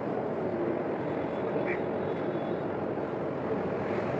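Steady background noise, a constant rushing hiss, with no speech over it.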